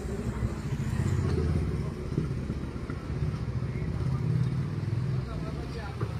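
Small engine of an auto-rickshaw idling with a steady low, pulsing rumble, with people's voices over it.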